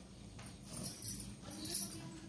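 A saree rustling and swishing as it is shaken out and draped, in short bursts about a second in and near the end, with glass bangles clinking.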